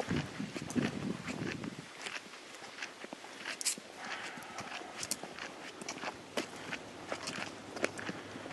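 Footsteps of several people walking along a forest trail: a string of short, irregular steps.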